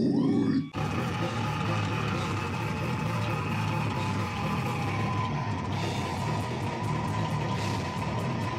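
A slam death metal band playing live: down-tuned guitar, bass and drums in a dense, continuous wall of sound. A loud opening sound cuts off abruptly under a second in before the band plays on.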